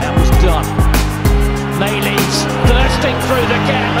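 Background music with a deep bass line and a steady beat.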